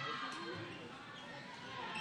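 A basketball being dribbled on a hardwood gym floor, with crowd voices chattering in the background.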